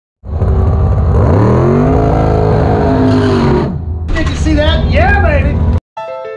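A car engine revving up, its pitch climbing over about a second and holding before it cuts off, followed by an excited shouting voice.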